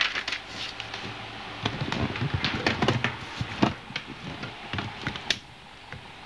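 Handling noise from a handheld camcorder being moved and set down toward a notebook on a desk: a run of irregular clicks, knocks and rustles, busiest in the middle. A last sharp click comes near the end, and it quiets after that.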